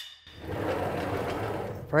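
Sliding table of an Ulmia cabinetmaker's table saw rolling along its rails as it is pushed: a steady, even rolling noise that starts a moment in and lasts about a second and a half.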